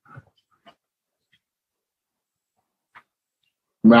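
Near silence in a pause between a man's spoken phrases over a video call, broken only by a couple of faint, brief sounds. His speech resumes near the end.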